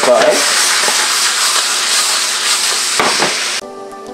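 Chicken and béchamel sizzling in a stainless steel skillet while being stirred, with one knock about three seconds in. The sizzling cuts off suddenly and music takes over near the end.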